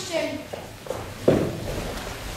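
Children's footsteps on a stage floor, with one loud thump a little past the middle; the end of a spoken line at the start.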